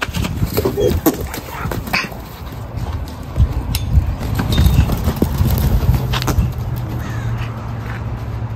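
A horse's hooves on arena sand: scattered irregular thuds as it moves and trots about, over a steady low rumble.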